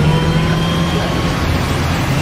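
Highway traffic noise: a steady low engine drone over road and wind rush, easing a little after about a second and a half.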